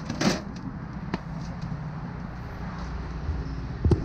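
A few light knocks and clatter as the removed stock plastic grille of an Audi A4 is handled and set aside: two close together at the start, one about a second in and another near the end, over a steady low background hum.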